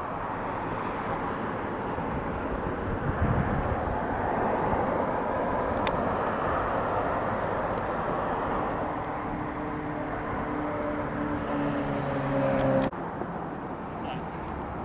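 Engine noise outdoors: a steady rushing drone that builds over the first few seconds, with a humming tone joining about eight seconds in. It cuts off suddenly near the end.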